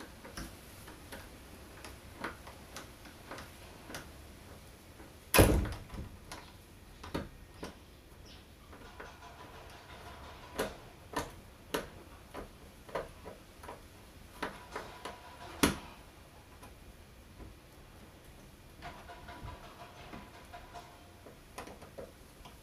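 Screwdriver working at the lever handle of a tubular lockset on a door: irregular small metal clicks and ticks, with one sharp louder knock about five seconds in and another about two-thirds of the way through.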